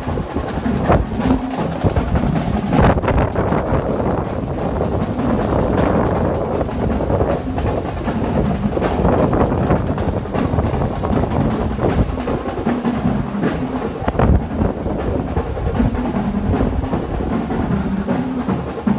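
Wind buffeting the phone's microphone on a high open balcony: a loud, steady rumbling rush. Drum-heavy music plays underneath, clearest near the start and the end.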